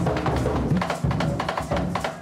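Tumba francesa drums playing a fast, dense rhythm for the Frente dance, with many strokes a second.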